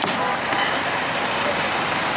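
Steady street traffic noise, with one sharp knock at the very start from a cleaver chopping grilled chicken on a plastic cutting board.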